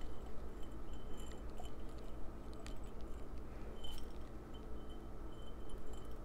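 Soy wax pellets poured and shaken from a glass jar into a glass bowl: soft crunchy rustling with scattered light clicks as the beads fall and the glass is handled.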